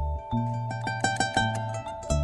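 Small jazz ensemble of vibraphone, acoustic guitar and bass playing. Sustained bass notes sit under a held mid-range tone, with a quick flurry of short high plucked or struck notes in the middle.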